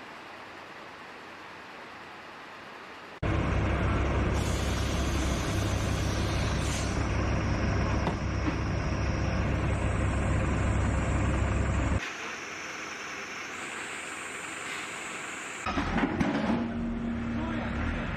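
Field sound cut between shots. A faint steady hum at first; then, about three seconds in, a heavy truck engine starts idling loudly with a deep steady rumble, until a cut about twelve seconds in. After that comes quieter street noise, then knocks and clatter with voices near the end.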